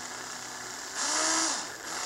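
Cordless drill motor run slowly in one short spurt of under a second, about a second in, its whine rising and then easing off as it twists two wires together with craft fur into a dubbing brush.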